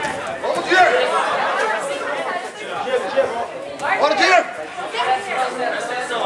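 Several people talking and calling out at once, an overlapping chatter of voices with louder calls about a second in and again around four seconds in.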